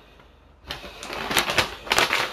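Paper envelope being opened and rummaged through by hand: rustling and crinkling with a couple of sharp clicks, starting under a second in.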